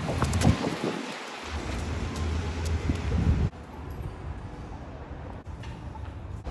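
City street noise: traffic rumble mixed with wind buffeting the microphone. About three and a half seconds in it cuts off suddenly to a quieter, steady background.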